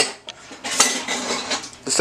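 Kitchen dishes and cutlery being handled, with a couple of sharp clinks over a noisy rustle.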